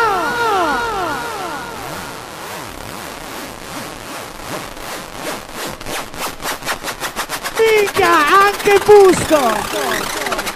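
A DJ-mix break with effects. An echoing sound slides down in pitch and fades over the first two seconds, then a run of clicks speeds up into a fast roll. Near the end an effected voice shouts over it.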